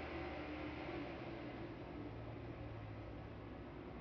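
Quiet room tone: a faint steady hiss with a low hum underneath, and no distinct events.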